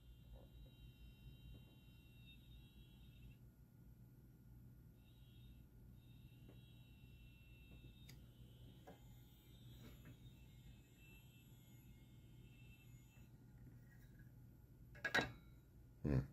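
Near silence, with a faint high electrical whine of several close tones that cuts out and comes back in, over a low steady hum: the self-interrupting RF oscillator and plasma bulb running, stuttering on and off. A brief louder noise comes about a second before the end.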